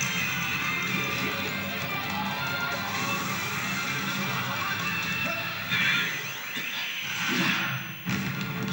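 Dramatic soundtrack music from a television show, heard through the TV's speaker in the room, with a louder burst of noise about six seconds in and another near the end.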